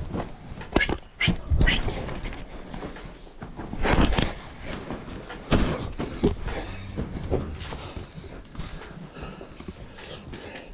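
Cattle being crowded through a pen and chute: a run of sharp knocks and bangs in the first two seconds, a louder bang about four seconds in, and more knocks with a short animal call around six seconds.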